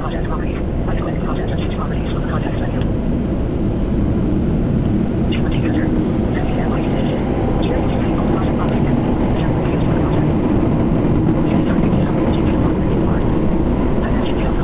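Interior running noise of a moving Toei Shinjuku Line subway train: a steady, loud deep rumble from wheels and motors, with faint scattered clicks and squeaks throughout.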